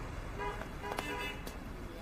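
Street ambience: faint scattered voices from a gathered crowd over a low steady traffic hum.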